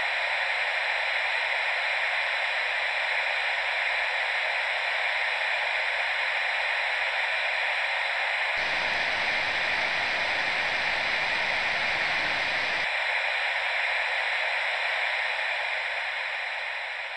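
Steady television-static hiss. From about eight and a half to thirteen seconds in it widens into a fuller, deeper rush, then narrows back to a thinner hiss, which starts to fade near the end.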